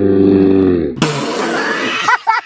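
A man's long, low, steady belch-like vocal sound that cuts off about a second in. A loud breathy hiss like air blown out through pursed lips follows it.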